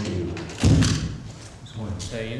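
Soft voices, cut by one sudden, loud, low thump a little over half a second in.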